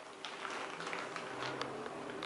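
Faint steady hum and hiss inside a stainless-steel elevator car, with a few light clicks.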